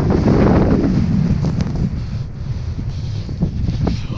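Wind buffeting the microphone of a first-person camera during a fast ski descent in deep powder: a steady low rush, strongest in the first second and easing after, with a few brief knocks near the end.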